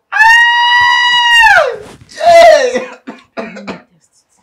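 A loud, high pitched, drawn-out vocal cry, held level for about a second and a half and then sliding down in pitch. It is followed by a second, shorter cry and a few short coughing bursts.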